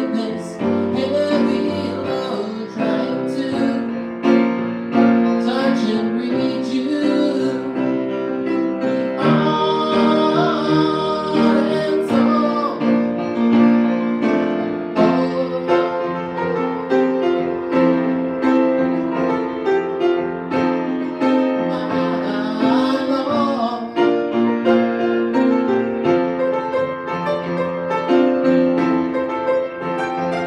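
Grand piano played live in a full pop-rock arrangement with a backing track, chords running steadily under a bending lead melody that comes in twice.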